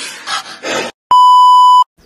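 A few short hissy rushes, then a loud, steady electronic beep lasting under a second, the flat single-pitch tone of a censor bleep sound effect.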